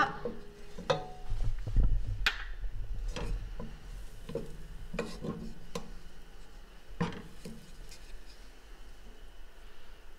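Wooden spoon scraping and knocking against the inside of a metal cooking pot as it pushes a pat of melting butter around, with a handful of separate sharp knocks spread through.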